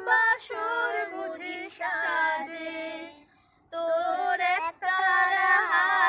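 A woman and two boys singing a song together, unaccompanied, with a short break for breath a little after halfway.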